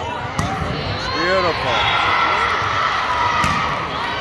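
Volleyball rally: the ball is struck about half a second in and again near the end, amid players' calls and spectators' voices echoing around the gym.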